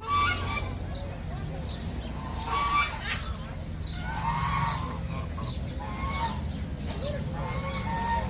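Domestic geese honking repeatedly, a short call every second or two.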